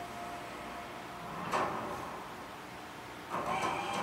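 Animated-film trailer sound effects played through a TV speaker: a whoosh about a second and a half in, then a louder rushing swoosh with a high ringing edge starting near the end.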